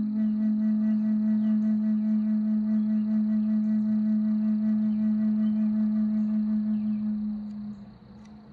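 A Native American flute holding one long, low final note with a slow, even waver, fading out near the end. Faint birdsong chirps high above it.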